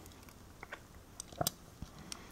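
A few faint, sharp clicks from fingers handling and turning a small diecast model car, over low room tone.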